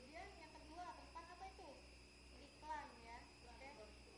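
Faint, unintelligible voices talking in the background over a steady low hum.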